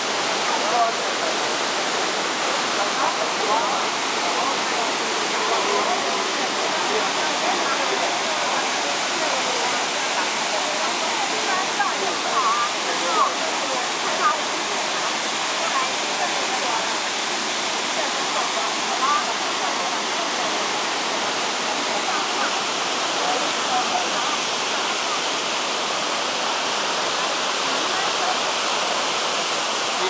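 Waterfall pouring into a rock pool: a steady, loud rush of falling water that holds the same level throughout.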